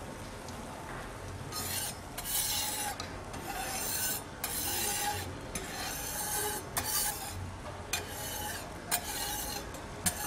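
Okonomiyaki batter and shredded cabbage being stirred in a bowl: a run of repeated scraping strokes, about one a second.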